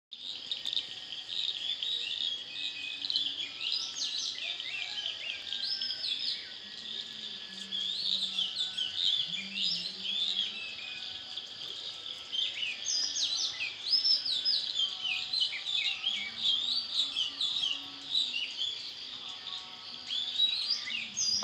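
Many wild birds chirping and calling together in quick rising and falling notes, over a steady high background hum.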